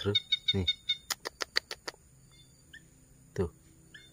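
A quick run of about six sharp clicks, some five a second, followed by a couple of faint short high chirps.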